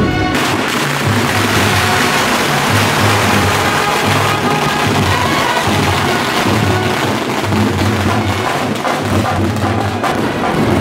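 Music with a stepping bass line, over the dense crackle and hiss of ground fireworks burning.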